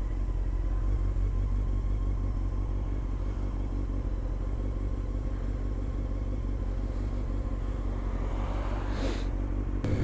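Honda CBR600 sport bike's inline-four engine running steadily at low revs while creeping along in slow traffic. A short hiss comes about nine seconds in.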